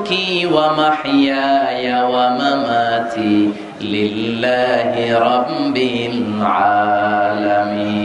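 A man's voice chanting a repeated Arabic phrase melodically into a microphone, in long drawn-out notes that glide up and down, with a long held note near the end.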